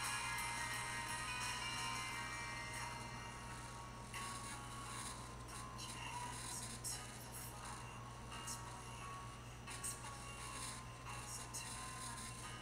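Music played through a makeshift speaker: Miga Wireless Solenoid printed coils on a cantilevered clear acrylic beam, driven against fixed magnets by a small amplifier. It sounds thin, mostly high notes with little bass, over a steady low hum.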